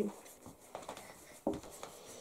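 Faint scratching of felt-tip markers being used to color, with two light knocks, the first a little under a second in and the second about a second and a half in.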